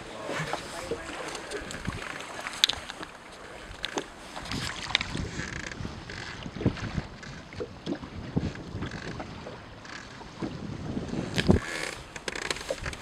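Sea water lapping against the hull of a small boat, with wind on the microphone and scattered light knocks and clicks.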